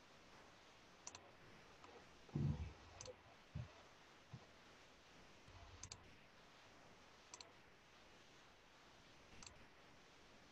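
Faint, scattered clicks of a computer mouse, about five spread over the stretch, with a few low dull thumps, the loudest about two and a half seconds in, like a hand or mouse knocking the desk.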